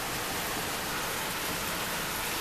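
Heavy storm rain pouring down, a steady, even hiss.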